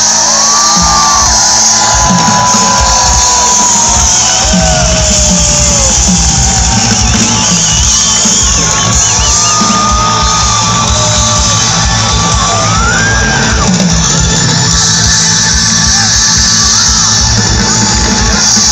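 Loud live dance-pop music from a concert sound system, with a steady driving beat and a sustained melody line, and a crowd shouting and cheering over it.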